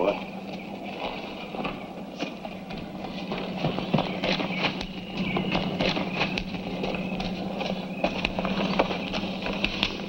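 Horses' hooves clattering and knocking irregularly on rocky ground, over a steady low hum.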